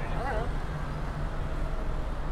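Busy city street: a steady low rumble of passing traffic, with a passer-by's voice briefly in the first half second.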